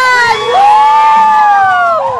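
A small group of people cheering, with one high voice holding a long call for about a second and a half before trailing off.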